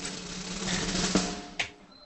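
A rapid drum roll, a dense patter of strokes that thins out and ends on a single hit about a second and a half in.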